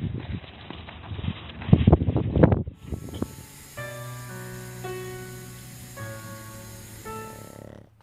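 Irregular scuffing and rustling noise with loud bursts, from a pug in a coat rolling in snow. It cuts off about three seconds in and gives way to soft music of held chords, which change about once a second.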